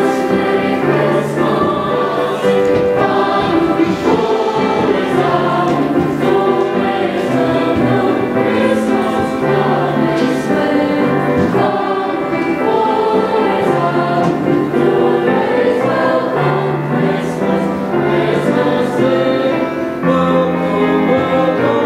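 A middle-school choir of boys and girls singing in parts, holding long notes that shift from chord to chord without a break.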